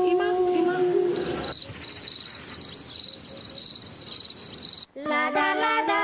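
A high, steady cricket trill with a fast, even pulse. It starts about a second in, runs for about three and a half seconds and cuts off abruptly. It follows the tail of a held sung note, and several voices begin singing near the end.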